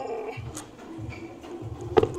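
Background music with a steady bass beat. At the very end comes one sharp, loud clack as dumbbells are set down on the gym floor.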